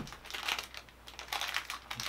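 Small clear plastic bags holding enamel pins being handled and lifted out of a cardboard box: a few short plastic crinkles and light clicks and taps.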